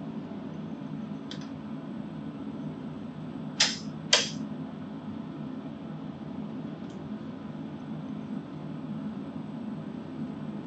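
Two sharp clicks about half a second apart, a little past the middle, over a steady low hum, with a couple of faint ticks elsewhere. This is the handling of the shaft and bracket hardware on a cardan shaft alignment demonstration rig.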